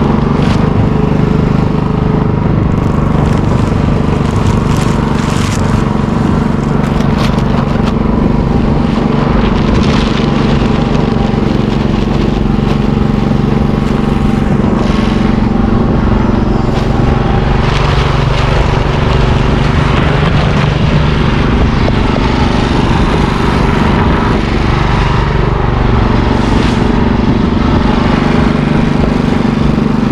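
Small gas engine of a paddle mortar mixer running steadily at a constant speed, with a few short knocks and scrapes mixed in as it is loaded for a batch of mortar.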